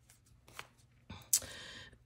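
Soft rustling of paper being handled, with a few faint ticks and one sharper click a little over a second in.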